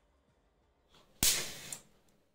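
An electric firework igniter going off on a 9 V battery through the relay, about a second in: a sharp pop followed by a short hiss that fades within about half a second. The igniter has fired, so the remote firing system works.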